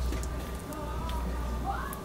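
Faint background voices over a steady low hum and a thin steady tone, with a few light clicks.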